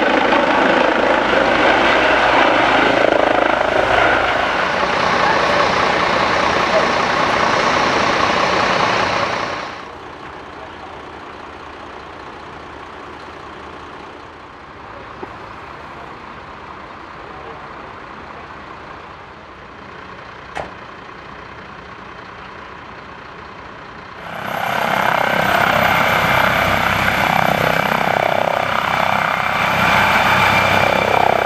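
Low-flying rescue helicopters, loud and close. For about the first ten seconds a helicopter's rotor and turbine noise fills the air, then it suddenly drops to a much quieter steady background with a couple of faint clicks. After about 24 seconds the orange MD Explorer emergency-doctor helicopter is loud again as it hovers just off the ground, with a high, thin turbine whine over the rotor noise.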